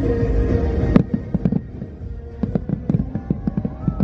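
Fireworks: one loud bang about a second in, then a quick string of bangs and crackling bursts, over show music.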